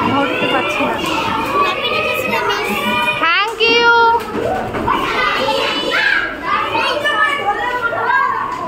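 A roomful of children shouting and chattering over one another, with one child's high-pitched shout standing out about halfway through.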